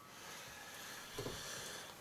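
Faint room tone: a low, steady hiss, with one soft, brief knock a little over a second in.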